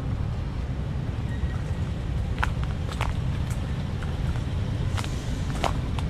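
A small sedan creeping slowly through a tight turn at low speed: a steady low engine and tyre rumble, with a few light footsteps on pavement.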